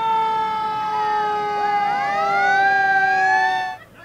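Fire truck horns blowing one long steady chord while the truck's siren winds up, rising in pitch through the middle. It cuts off abruptly near the end.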